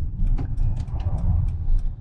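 Fiat Ducato camper van heard from inside its cab while driving slowly: a steady low rumble of engine and road noise, with light, quick ticks and rattles from the cabin.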